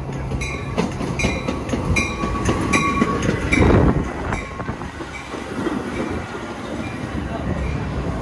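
Metra commuter train moving past, its wheels clicking over rail joints about two to three times a second. The clicking stops about four and a half seconds in, just after a louder rush of noise.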